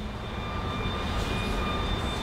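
A steady low rumble that slowly grows louder, with a faint thin high whine above it.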